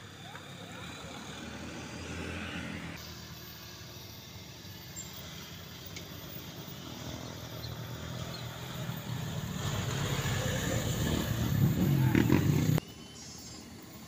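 Diesel engines of passing vehicles: a Mitsubishi Canter truck running briefly, then after a cut a Mitsubishi bus approaching, its engine growing steadily louder until the sound cuts off suddenly near the end.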